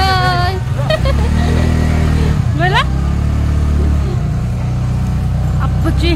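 A vehicle's engine running with a steady low drone as it drives off along the street.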